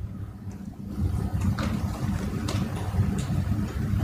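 Low, steady rumble of background room noise with a faint hum and no clear speech.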